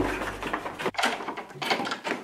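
A few sharp clicks and knocks with shuffling movement, as of people walking quickly on a hard floor. Background music fades out at the start.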